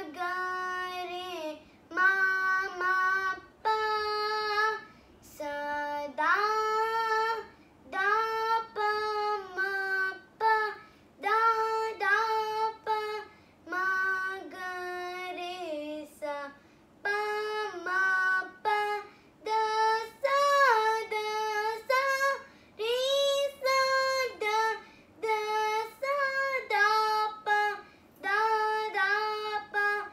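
A young girl singing solo and unaccompanied in a high voice. Her phrases last about a second each, with gliding ornaments between notes and brief breaths between phrases.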